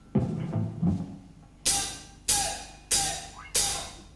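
Drum kit count-in: a few low thuds near the start, then four evenly spaced cymbal strikes a little over half a second apart, each ringing briefly, counting the band into a rock song.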